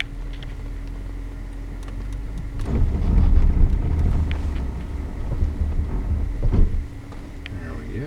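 Cabin noise of a 2011 Range Rover Sport moving slowly over a rough dirt trail: a steady low engine hum, which swells into a louder rumble with a couple of knocks from the tyres and suspension for about four seconds in the middle before easing off again.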